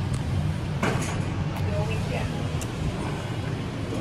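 Otis scenic elevator car humming steadily, with a few sharp clicks as the doors open. The hum falls away near the end as the car is left, and faint voices sound in the background.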